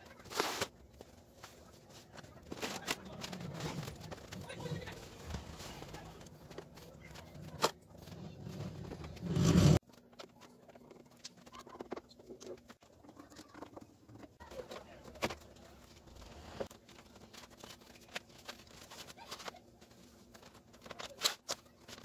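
A screwdriver and hands working on the plastic back cabinet of a Philips CRT television as it is unscrewed and opened: scattered clicks, ticks and knocks, with a louder stretch of handling noise just before ten seconds in.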